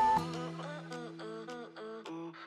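Background music of short repeated melodic notes over a held low note. A long, steady electronic timer beep cuts off just after it begins, marking the end of the exercise interval.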